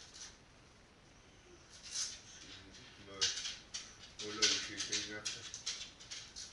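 Quiet muttered voice with rustling and small clicks of handling, mostly in the second half.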